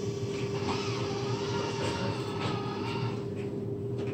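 A steady machine hum with one constant droning tone, under faint background chatter.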